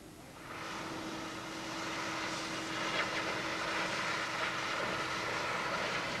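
Steady mechanical roar that fades in about half a second in and grows louder over the next couple of seconds, with a steady low hum under it.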